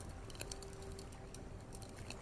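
Faint campfire crackling: scattered small pops and snaps over a soft hiss, with a faint steady hum underneath.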